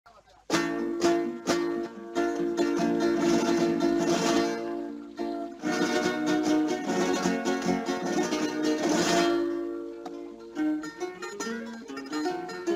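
Spanish guitars playing an Andalusian-style introduction: after a brief hush, sharp strummed chords struck about twice a second, then fast, dense strumming flourishes.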